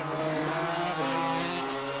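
Two-stroke 250cc Grand Prix racing motorcycles, a Honda RS250 and an Aprilia, running hard at high revs close together. The engine pitch steps down about a second in.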